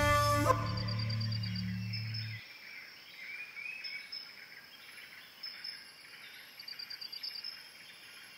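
Soundtrack music ends: its notes stop about half a second in and a low drone cuts off about two and a half seconds in. After that comes faint natural ambience of chirping birds and high, rapid trills, twice over.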